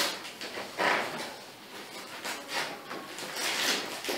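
Packing tape and brown paper wrapping being picked at and torn off a parcel: a run of short rips and rustles, with a longer tear near the end.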